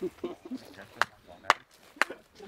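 Two sharp clicks or knocks about half a second apart, with faint voices and laughter underneath.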